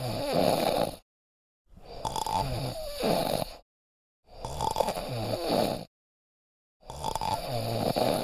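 Snoring: four long snores, about two and a half seconds apart, with dead silence between them.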